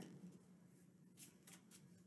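Near silence, with a few faint, brief clicks of tarot cards being handled about a second in.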